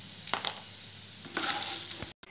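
Wooden spatula stirring and scraping fried idli pieces around a non-stick kadhai, over a light sizzle of hot oil. Two short bursts of scraping, about a third of a second in and again past a second and a half.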